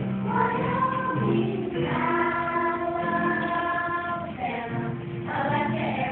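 Children's choir singing, holding one long chord through the middle.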